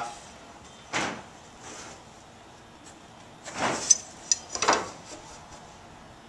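Steel carpenter's square sliding and scraping on a wooden stair stringer while a pencil marks layout lines, in a few short scrapes: one about a second in and a cluster in the second half.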